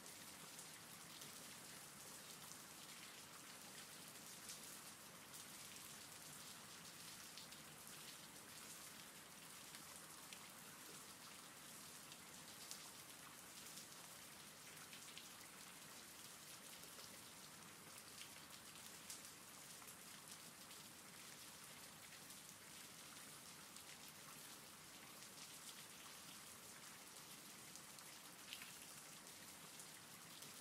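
Faint, steady rain falling, with scattered sharper ticks of individual drops.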